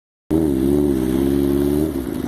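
Kawasaki ZX-7R 750cc inline-four engine swapped into a Yamaha Banshee ATV, idling steadily with a slight waver in pitch. It cuts in abruptly a moment after the start.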